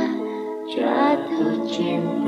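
Slow Indonesian pop ballad music: a wavering lead melody over held chords, with a new phrase starting just under a second in.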